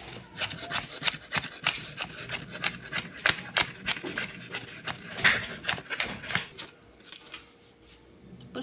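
Knife chopping and mincing garlic on a wooden cutting board: a quick, uneven run of knocks, about four a second, that thins out and stops near the end.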